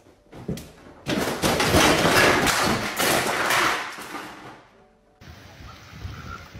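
A thump about half a second in, then a loud crash and clatter lasting about three seconds that dies away.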